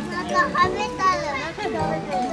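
Many children's voices chattering and calling out at once, overlapping with no single clear voice.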